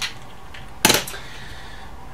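A single sharp clack about a second in: a screwdriver being set down on the workbench.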